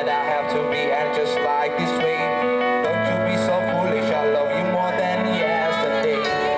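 A live band playing on an outdoor stage, with a bass line that moves from note to note under several melodic parts.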